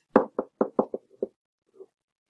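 Stylus knocking against a writing tablet while handwriting: about six quick, sharp knocks in the first second and a bit, then a faint one near the end.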